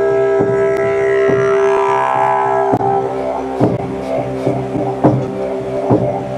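Didgeridoo playing a continuous drone, with sharp rhythmic accents about once a second and an overtone that sweeps up and back down in the first half.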